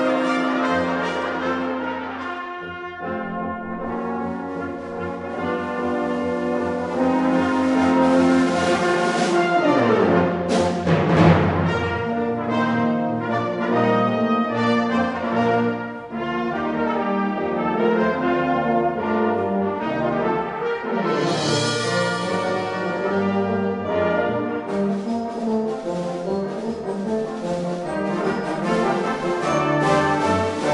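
Live brass ensemble of trumpets, flugelhorn, horn, baritone, trombones, euphonium and tuba playing a lively concert piece with percussion, in a hall.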